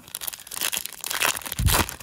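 Foil wrapper of a 2023 Panini Chronicles baseball card pack crinkling as it is torn open by hand, with a louder crackle near the end.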